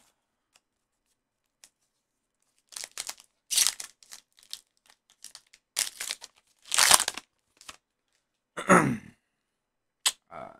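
A foil trading-card pack (Topps Heritage baseball) torn open by hand in a series of short rips and crinkles, starting about three seconds in.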